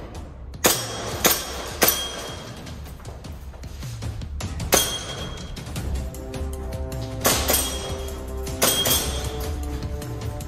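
Sharp cracks of an airsoft gun firing and pellets clinking off targets, about seven scattered shots with a long gap in the middle, some with a short metallic ring. Background music plays throughout.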